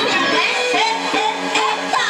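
Karaoke: women singing into handheld microphones over a loud, steady backing track with a regular beat.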